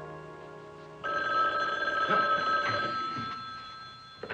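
Desk telephone bell ringing once, starting suddenly about a second in and fading over about two seconds. Orchestral film score is fading out under the first second.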